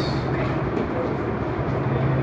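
Steady low hum over an even rushing noise.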